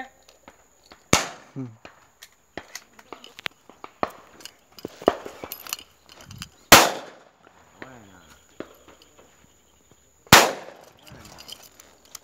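Three loud shotgun shots during a dove shoot, about one, seven and ten seconds in, each with a brief echo, the middle one the loudest. Fainter distant pops fall between them.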